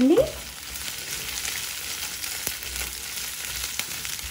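Garlic cloves, onion and dried red chillies frying in a nonstick kadai over a medium flame: a steady, even sizzle. A wooden spatula stirs them, with a couple of light knocks in the second half.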